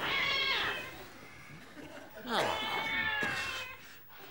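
A cat meowing twice: a short call with a falling pitch, then a longer wavering yowl about two seconds in.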